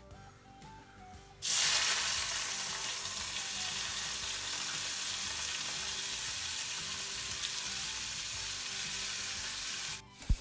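Chopped vegetables dropping into hot oil in a kadai: a loud sizzle starts suddenly about a second and a half in and goes on steadily as they fry.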